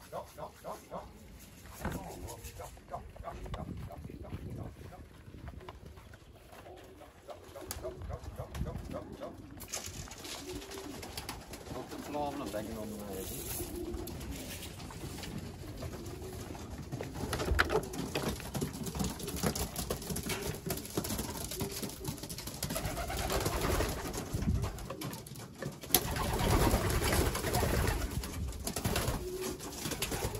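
Domestic racing pigeons cooing in and around a wooden loft, mixed with rustling and knocks of movement, growing louder near the end as the birds are close by.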